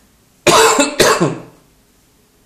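A person coughing twice, loud, the two coughs about half a second apart.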